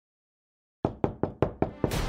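Rapid knocking on a door: about six quick, evenly spaced knocks starting a little under a second in. Background music swells in just at the end.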